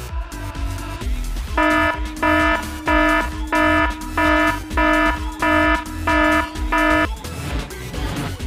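Spaceship cockpit warning-alarm sound effect: a buzzing electronic beep repeated nine times at an even pace, about three beeps every two seconds, starting a second and a half in and stopping about a second before the end. It signals an alert, over background music with a steady bass beat.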